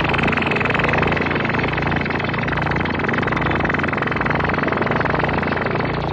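Electronic noise music: a heavily filtered, distorted synthesizer texture from a Yamaha CS-5 used through its external input. It is a dense, rapidly pulsing noisy buzz over a steady low drone.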